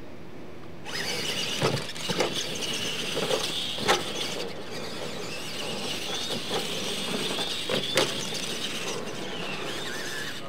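Radio-controlled monster trucks taking off about a second in and racing over dirt, their motors and gears whining with a wavering pitch. Several sharp knocks come as they hit and land off the ramps, the loudest a little before the 4-second mark and another near 8 seconds.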